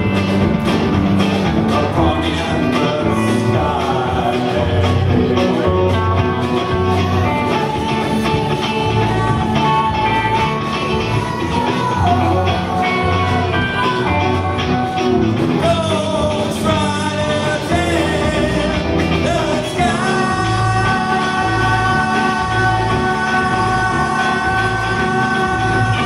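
Live rock-and-roll band playing with electric guitars, bass, drums and keyboard, with singing over it; from about two-thirds of the way through, several long held notes sound together over the beat.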